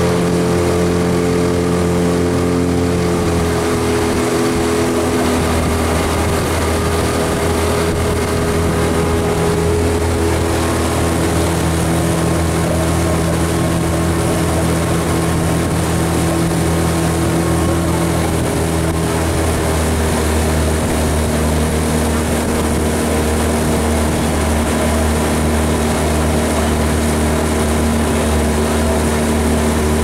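Outboard motor of a coach's launch running steadily at cruising speed, its pitch shifting slightly a few times as the throttle changes.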